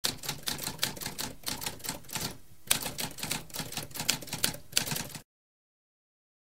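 Typewriter keys being typed in a fast run of clicks, with a short pause about two and a half seconds in, then more typing that stops abruptly just after five seconds.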